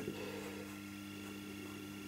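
A quiet, steady low electrical hum.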